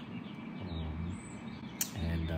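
Faint bird chirps, with a short low hum from a man's voice in the middle.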